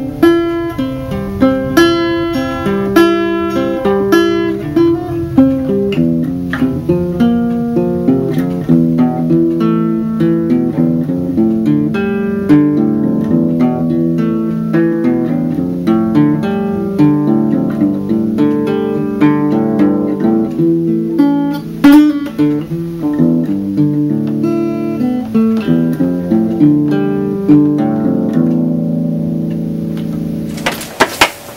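Small child-size acoustic guitar played solo, a continuous run of picked notes with a few sharper strummed chords, about two seconds in and again around twenty-two seconds in.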